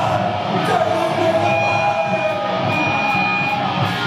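Metal band playing live: loud distorted electric guitars holding long notes over drums and cymbal hits.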